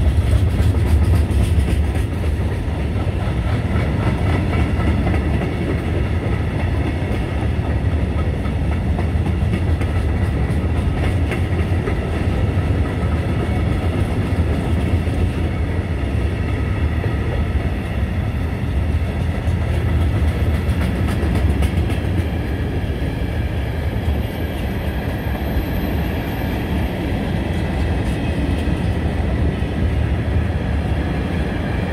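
Long train of open-top freight coal wagons rolling past, a steady loud rumble of wheels on the rails with a clickety-clack of wheels over rail joints, clearest in the first few seconds. Steady ringing tones from the wheels and rails run through it.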